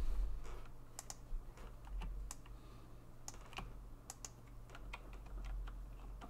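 Faint, scattered clicks of a computer keyboard and mouse at irregular intervals, over a low steady hum.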